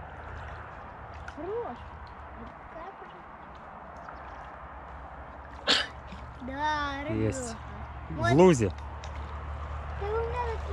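Short wordless exclamations from voices over a steady low background hum, the loudest one near the end. One sharp, sudden sound comes a little past halfway.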